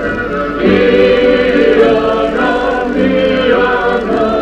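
A group of voices singing together, with a louder new phrase starting just after half a second in.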